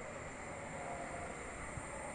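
Monkeys screaming far off, barely picked up, under a steady hiss.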